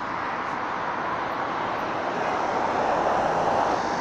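Road traffic: a steady rush of passing cars that slowly grows louder.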